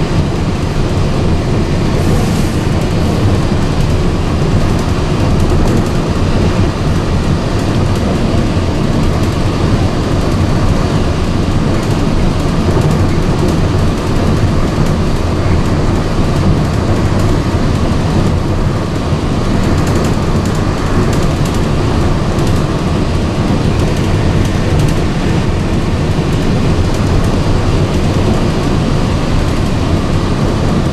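Steady low running noise of a Walt Disney World Mark VI monorail heard from inside the cabin as it travels along the beam: its rubber tyres on the concrete beam and its drive motors make an even drone with no break.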